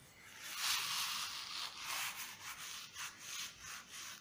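A paintbrush stroked back and forth over a wall: a scratchy rubbing of bristles that starts about half a second in and swells and fades with each stroke.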